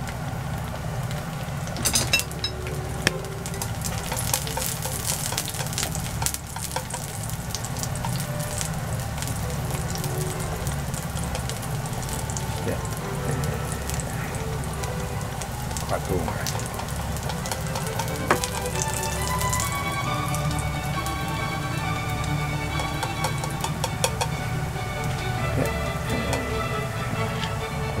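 Sliced garlic frying in oil in a frying pan: a steady sizzle with scattered sharp crackles, over a low steady hum.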